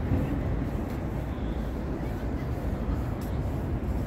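Steady low rumble of outdoor city street ambience, with no distinct events.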